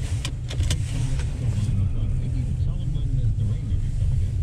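Car cabin noise while driving: a steady low rumble of engine and road, with a few short clicks in the first second.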